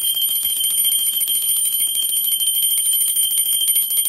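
A loud, steady, high-pitched ringing with a fast rattling flutter, like an alarm or electric bell.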